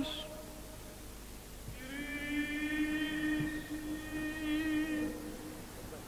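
A male voice in Byzantine chant softly holding one long, steady note, coming in about two seconds in and fading out about five seconds in, between louder chanted phrases.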